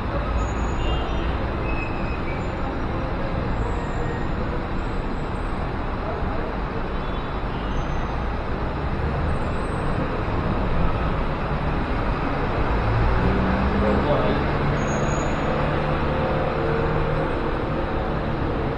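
Steady road traffic noise, swelling a little about two-thirds of the way through.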